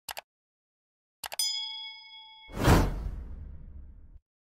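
Subscribe-button animation sound effect: two quick clicks, then more clicks and a bell-like ding that rings for about a second, followed by a whoosh that swells and fades out.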